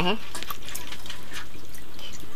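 Steady hiss with scattered small pops and crackles from a pan of vegetables cooking in water over an open wood fire in a mud stove.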